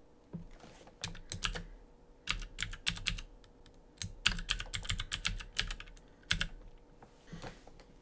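Computer keyboard typing: several short runs of quick keystroke clicks with brief pauses between them, stopping about six and a half seconds in.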